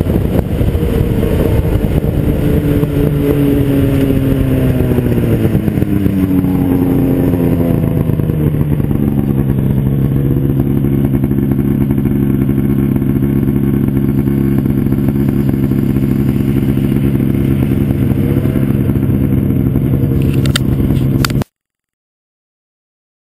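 Ski-Doo 600 SDI two-stroke twin snowmobile engine running on the trail, with an aftermarket Dynoport exhaust. Its note drops over several seconds as the sled slows, then holds steady, and the sound cuts off suddenly near the end.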